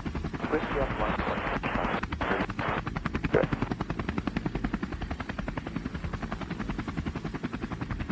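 Radio static with a rapid, even pulsing, about ten pulses a second, between air-traffic-control transmissions, with a few sharper cracks in the first few seconds.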